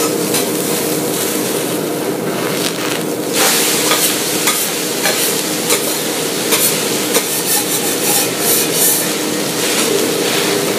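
Food sizzling on an okonomiyaki shop's iron griddle over a steady hum. From about three seconds in come frequent short metal clinks and scrapes of spatulas working on the griddle.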